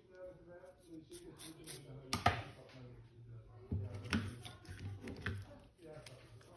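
Quiet handling of small smartphone parts: soft rubbing with a few light clicks and taps.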